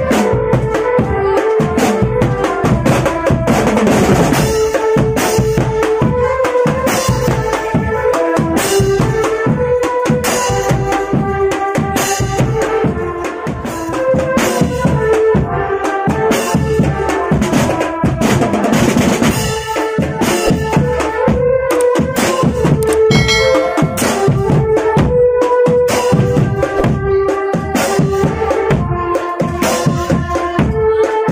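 Marching drum band playing: snare and bass drums beat a fast, steady rhythm, with a melody in held notes over the drumming.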